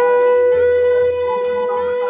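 A conch shell (shankha) blown in one long, steady note.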